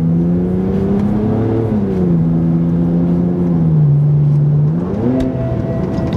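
BMW 330i straight-six engine under hard acceleration. The revs climb, drop at an upshift about two seconds in, then flare up quickly near the end as the automatic transmission slips under full throttle. The owner puts the slipping down to failing transmission solenoids, and it sets off the transmission warning and limp mode.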